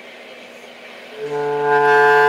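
Bass clarinet playing one steady, held low note, the E. The note starts just over a second in.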